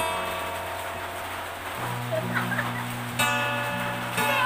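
Acoustic guitar being strummed: a chord rings and fades, low bass notes come in, and another chord is strummed near the end.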